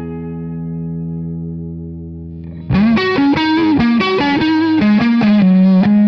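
Electric guitar played through a Quilter 101 Mini Reverb amp head. A held chord rings and slowly fades, then about three seconds in a louder single-note lead line with string bends starts.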